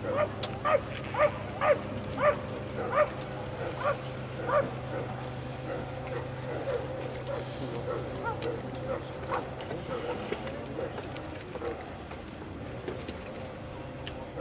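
An animal giving a run of short, pitched yelping calls, about two a second, loudest in the first few seconds and then fainter and sparser, over a steady low hum.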